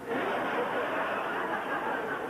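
Live theatre audience laughing together, breaking out suddenly and holding steady.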